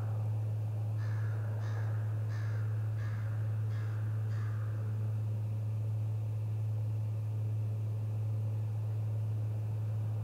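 A bird calling six times in quick succession, starting about a second in and ending around the middle, over a steady low hum that runs throughout.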